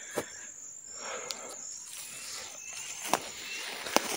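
Insects chirping steadily with a high, thin, even tone, with a few soft steps and rustles in dry grass, the clearest a little after three seconds and near the end.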